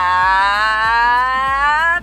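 A woman's voice holding one long, drawn-out high note, its pitch slowly rising, like a sung or shouted "aaah".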